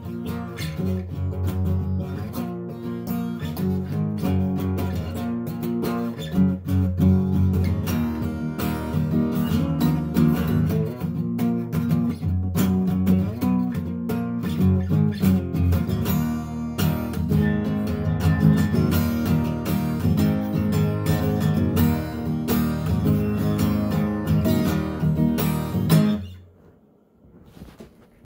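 Solo acoustic guitar playing chords with no singing, then stopping near the end as the last notes die away.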